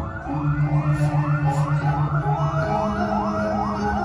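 Balinese gamelan music for a Rejang dance: a fast repeating figure of rising notes over held low tones, with the low note changing about two-thirds of the way through.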